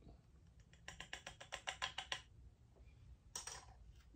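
Plastic cap being screwed onto a SodaStream bottle of water: a quick run of faint clicks, about eight to ten a second, lasting about a second, then one brief scrape near the end.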